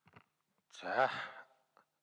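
A man's voice heard through a desk microphone: one breathy sigh about a second in, lasting under a second.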